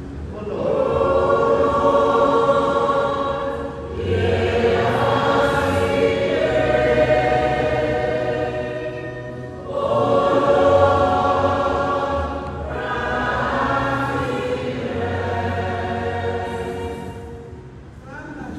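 Church choir singing slowly in four long phrases of held notes.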